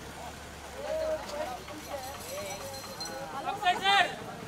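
Several people talking and calling out, with a louder call near the end.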